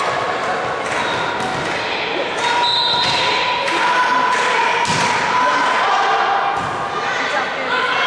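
A series of echoing thuds of a volleyball hitting the sports-hall floor, under loud shouting voices of players and spectators ringing round the hall.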